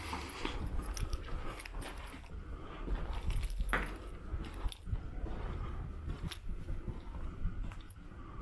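Footsteps crunching and scuffing over loose brick rubble and grit, with many small irregular clicks and a sharper knock a little before four seconds in, over a low steady rumble.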